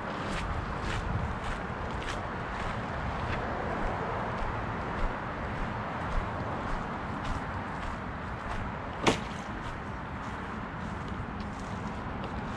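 Footsteps on dry grass and fallen pine needles, about two steps a second, over a steady outdoor rush, with one sharper click about nine seconds in.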